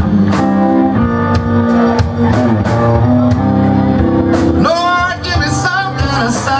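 Live electric blues band playing: electric guitars, bass, drums and Hammond B3 organ, with regular drum and cymbal hits under held chords. A wavering high melodic line comes in about five seconds in.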